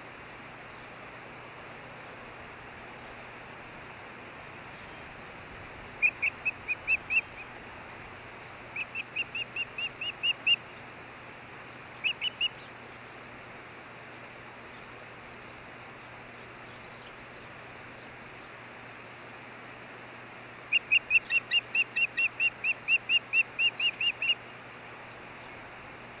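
Osprey calling: four runs of rapid, high, whistled chirps, each a quick string of short evenly spaced notes, the longest run about three and a half seconds near the end. A steady hiss lies underneath.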